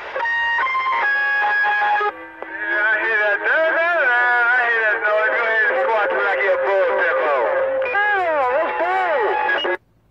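Another station keyed up on the CB channel, sending melodic electronic tones over the air, which the operator calls a noise toy. It is heard through the CB radio's speaker: first about two seconds of steady stepped tones, then warbling, sliding tones that cut off sharply just before the end.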